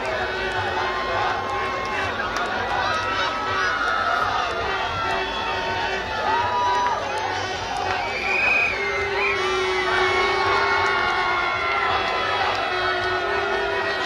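Large street crowd cheering and shouting, many voices overlapping, with some held shouted calls.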